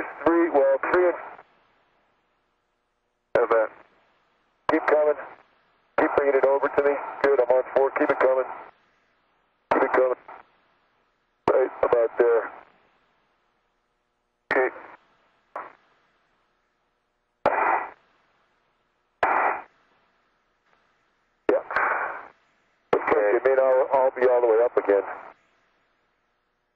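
Astronauts' voices over a space-to-ground radio link: a string of short, narrow-band transmissions, each opening with a click, with dead silence between them.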